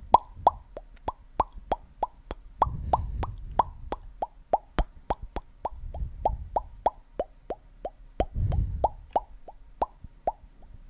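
Close-miked ASMR mouth pops made one after another, about three or four a second, each a sharp pop with a short hollow ring, with a soft low rumble coming and going between them.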